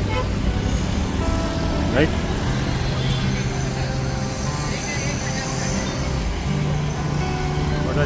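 Road traffic passing, cars going by, under background music with long held notes. A brief voice is heard about two seconds in.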